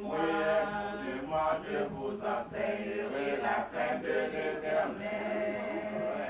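A cappella choir singing a hymn in French, several voices in harmony with no instruments.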